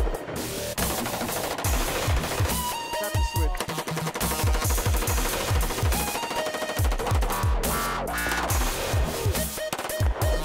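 Rapid semi-automatic rifle fire, shot after shot in quick strings, mixed over electronic dance music with deep falling bass hits and a steady beat.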